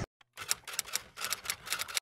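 Typewriter sound effect: a quick, uneven run of about ten key clacks from about half a second in as a title types out letter by letter, cut off sharply at the end.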